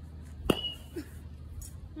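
A Rawlings Prodigy metal youth baseball bat striking a baseball: a single sharp ping about half a second in, with a short high ring that dies away quickly.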